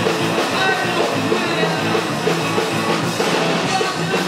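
Live rock band playing loud and steady: electric guitar, bass guitar and drums together.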